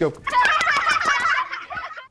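A high-pitched, fast-warbling squeal lasting about a second and a half: a comic noise standing for the kids rushing across the room.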